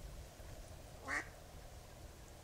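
A duck quacks once, a single short call about a second in.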